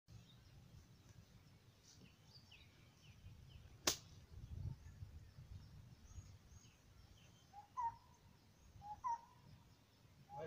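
Quiet outdoor ambience with faint bird chirps. There is a single sharp click about four seconds in, and two short rising calls near the end.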